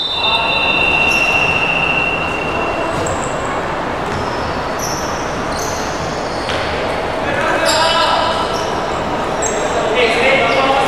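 Indoor basketball game sound: a ball bouncing on the wooden court, brief high squeaks and a held high tone early on, and voices over it all, echoing in a large hall.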